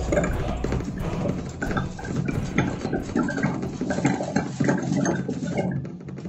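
Experimental electronic sound played live from a laptop and mixer, driven by a wearable sensor harness: irregular short blips and gurgles, several a second.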